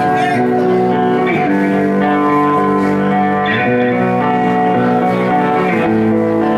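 Live metal band starting a song on electric guitars, playing sustained ringing chords that change about every two seconds.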